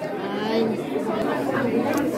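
Background chatter: several people talking at once, indistinct and overlapping, with no one voice standing out.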